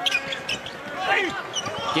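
Basketball being dribbled on a hardwood court during live play, a series of short bounces.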